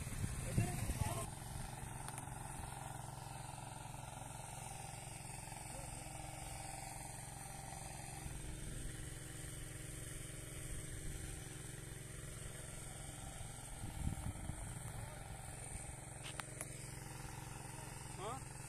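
An engine running steadily in the background, a low even hum, with brief voices at the start and again about 14 seconds in.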